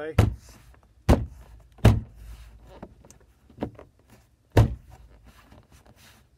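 Hand blows banging a leather-covered plastic door armrest into a Toyota MR2 Spyder door panel: four hard thumps, the last a few seconds after the first three, with a lighter knock between them. The blows are driving the armrest's upper retaining clips to snap into place.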